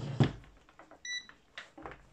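Knocks and clicks of a digital multimeter being picked up and handled, with one short electronic beep from the meter about a second in.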